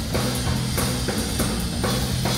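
Drum kit playing a steady groove, kick and snare strokes about three a second under continuous cymbals, with an electric bass holding low sustained notes beneath.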